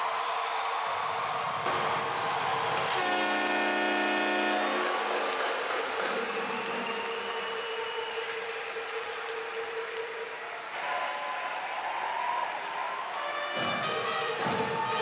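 Arena crowd noise under a held musical tone, with a horn blast of about two seconds a few seconds in.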